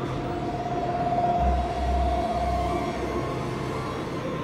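Eerie ambient synth drone: a single wavering tone held for about three seconds, with a deep low rumble coming in about a second and a half in.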